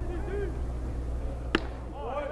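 A pitched baseball pops into the catcher's mitt once, about a second and a half in, over a steady low background rumble of the ballpark broadcast.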